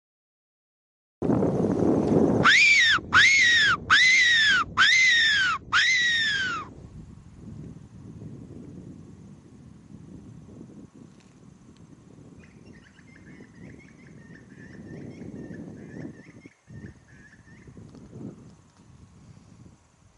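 A fox whistle (mouth-blown predator call) sounded in five short high-pitched squeals, each rising then falling in pitch, to call in predators. Then quieter steady background noise with faint high chirps.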